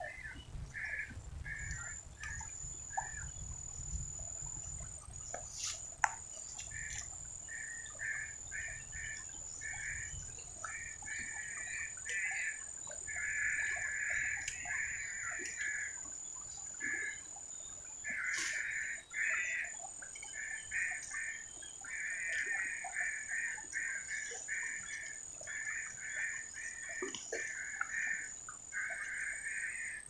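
A bird chirping over and over in quick runs of short notes, over a steady, thin, high whine.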